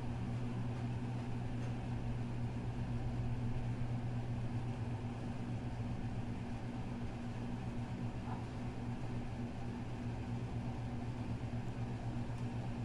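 A steady low machine hum at one unchanging pitch, over a faint hiss.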